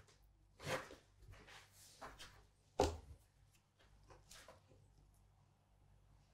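Dough being divided with a plastic bench scraper on a wooden worktop and the pieces set on a kitchen scale: a few soft scrapes and taps, the sharpest nearly three seconds in.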